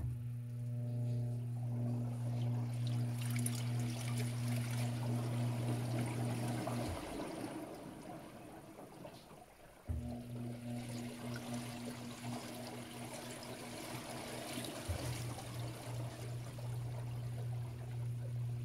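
Panasonic 16 kg top-load washing machine spinning its drum: the motor starts with a steady low hum, cuts out about seven seconds in, then starts again with a thump about three seconds later. Water splashes and drains from the whirling load of sheets.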